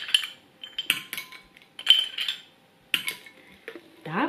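Metal spoon clinking against a ceramic ramekin as ice cubes are scooped out and dropped into a glass of milk. About half a dozen separate sharp clinks, each with a short high ring.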